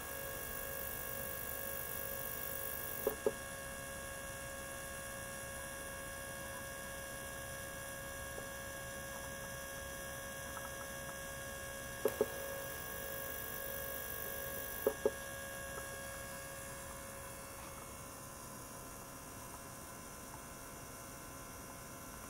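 Ultrasonic cleaner bath running with a steady electrical hum carrying several pitched tones. A high hiss is present until a double click about three seconds in, and returns between two more double clicks at about 12 and 15 seconds.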